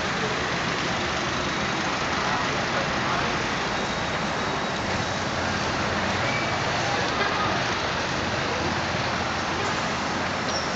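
Steady street traffic noise: the engines of cars and a city bus in slow traffic.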